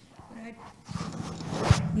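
Handling noise from a handheld microphone being passed and picked up: rubbing and rustling against hands and clothing, with one sharp bump near the end.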